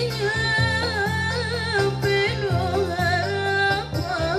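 A woman singing a North Maluku qasida melody with a wavering, ornamented vibrato, over a backing track of steady low accompaniment.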